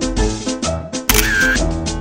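Background music with a steady beat, with a camera-shutter sound effect about a second in.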